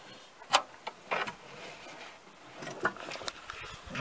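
A sharp click about half a second in, then a brief scrape and a few faint small clicks as hands work the riding mower's deck linkage and its plastic keeper into place.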